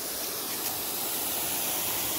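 Lawn sprinkler spraying water: a steady hiss that grows slightly louder.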